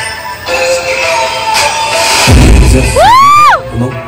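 Edited dance-mix music for a live dance routine. A deep bass hit comes in about two seconds in, and near the end a pitched sound effect swoops up and back down.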